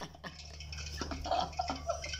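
Hot oil crackling and sizzling in a pan of deep-frying potato fries on a charcoal stove, scattered small pops over a steady low hum.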